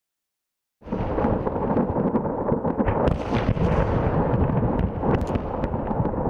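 Artillery shells detonating in a burning ammunition depot: a heavy, continuous rumble crowded with sharp cracks and pops, starting suddenly about a second in.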